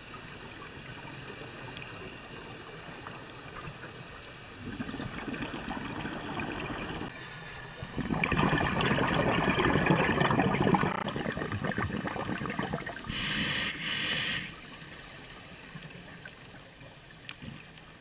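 Scuba breathing heard underwater: a regulator's exhaled bubbles gurgle loudly for about three seconds midway, followed by a short hissing inhale through the regulator.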